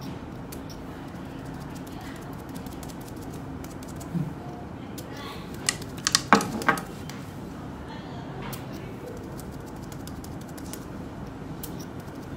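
Quiet room tone with a small cluster of short, sharp clicks and taps a little past the middle, from gloved hands handling a spray bottle.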